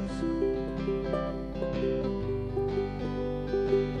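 Instrumental break in a folk song: acoustic guitar strummed in a steady rhythm under held accompanying notes, with no singing.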